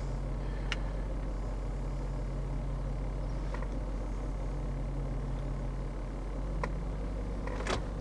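BMW E53 X5 4.6is V8 idling steadily, heard from inside the cabin, with a few faint clicks.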